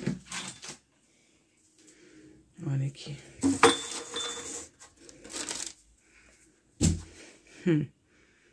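Glass jars being set down on a wall shelf: a series of light knocks and handling noises, with a sharp ringing clink of glass about three and a half seconds in.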